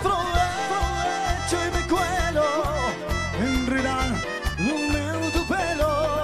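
Live cuarteto band playing: a wavering melodic lead line over pulsing bass notes.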